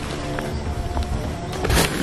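Background music with held tones over a steady low beat. About three-quarters of the way through, a brief loud rush of noise rises over it.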